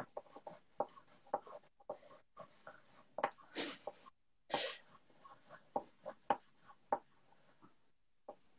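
Pencils scratching on paper in short, irregular strokes, as two pencils are drawn with at once, one in each hand. Two longer, louder rasps come around the middle.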